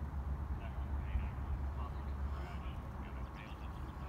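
Wind rumbling on the phone's microphone, with faint indistinct distant voices and scattered short high calls.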